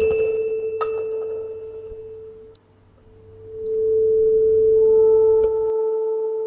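Tuning fork on a wooden resonance box, just struck with a mallet, ringing a single steady pure tone with a second light click about a second in. The tone fades almost away about two and a half seconds in, then swells back up and holds: matched forks ringing in resonance.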